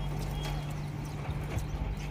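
A few hollow knocks from a plastic tub of wheat being handled under a tap, over a steady low hum.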